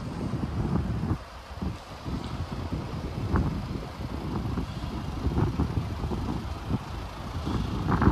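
Wind buffeting the microphone: a gusty low rumble that swells and drops irregularly.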